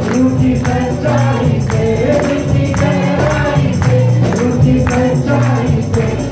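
A man singing a Christian worship song into a microphone over live amplified accompaniment, with acoustic guitar and tambourine keeping a regular beat.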